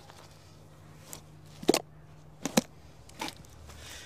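A few short sharp clicks and knocks from a small plastic ladybug tub and its lid being handled, over a low steady hum.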